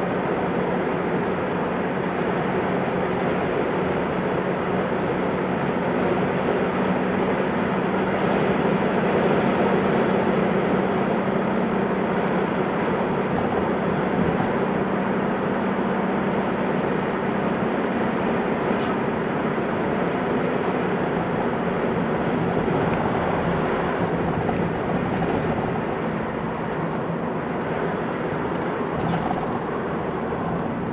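Car driving on a country road, heard from inside the cabin: steady engine hum with road and wind noise, easing slightly near the end.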